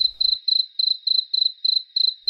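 Cricket chirps laid in as a sound effect: identical short, high chirps at an even pace, a little over three a second.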